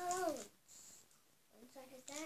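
A short high-pitched voice call, about half a second long, rising then falling in pitch, meow-like; a shorter voiced sound follows near the end.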